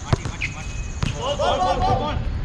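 A basketball bouncing on an outdoor court surface: two single bounces about a second apart.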